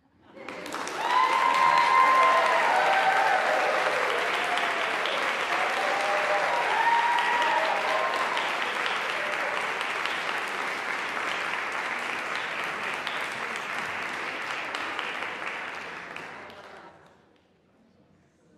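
Audience applauding, swelling in about the first second, holding, then thinning out and dying away a second or so before the end. A few voices call out over the clapping during the first several seconds.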